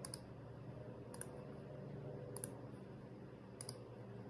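Four faint, sharp clicks about a second apart from a computer mouse and keyboard as text is selected, copied and pasted, over a low steady room hum.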